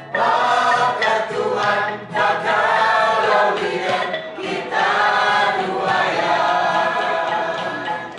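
A group of voices singing together in unison phrases, with brief breaks between phrases about two and four seconds in.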